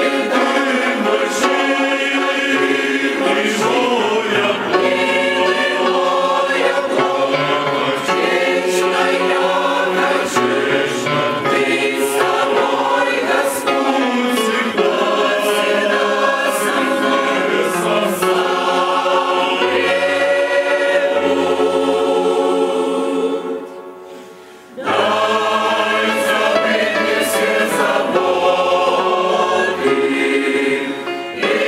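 Mixed church choir singing a hymn, with steady low notes held beneath the voices. The singing drops away briefly about three-quarters of the way through, then comes back in.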